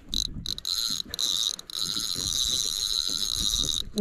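Spinning reel's drag buzzing as a hooked fish pulls line off against it while the reel is cranked. It is a high-pitched buzz that breaks off briefly a couple of times in the first second and a half and then runs steadily.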